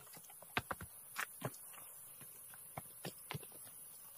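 Footsteps and light knocks of boots on a pile of stones and leaf-littered ground: about a dozen short, irregular clicks and taps.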